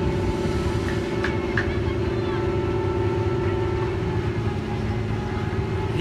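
River car ferry's engine running steadily as the ferry pulls away from the landing, a constant hum over a rapid low pulse.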